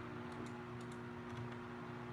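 Faint, scattered clicks of computer keys over a low steady hum.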